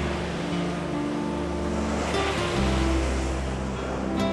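Sea surf breaking and washing onto a beach, with a wave crashing about two seconds in, under background music with long held low notes.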